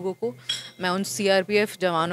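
A woman speaking, her voice pausing briefly about half a second in, when a short high clink sounds in the background.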